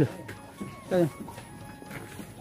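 A person's brief vocal sound, a short call with falling pitch, about a second in, over low background noise.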